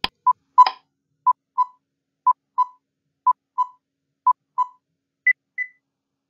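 Quiz countdown timer sound effect: a click, then short beeps in pairs, one pair each second for five seconds, ending with a higher-pitched pair as the time runs out.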